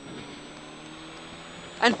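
Rally car engine heard from inside the cabin, held flat out, its note rising slowly as the car accelerates, with a faint high whine rising alongside it.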